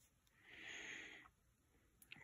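Near silence, with one faint breath from the person holding the phone, lasting under a second about half a second in.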